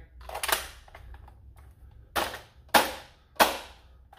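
A 15-round foam-dart magazine being pushed up into the magwell of a Dart Zone Pro MK4 blaster: four sharp plastic clacks, the last three about two-thirds of a second apart.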